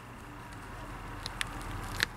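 Faint handling sounds from a skinned chicken carcass being worked by hand, with a few soft clicks a little past the middle, over a low steady background hum.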